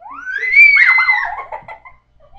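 A girl's high-pitched squeal that rises sharply and holds, then breaks into wavering, falling laughter that fades out after about a second and a half.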